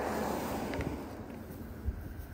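A vehicle passing on the street: a rushing noise that swells and fades within the first second, over a low rumble of wind on the microphone, with a short thump near the end.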